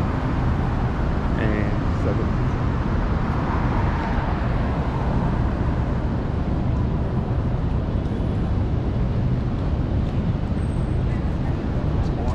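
City street ambience: a steady low rumble of road traffic.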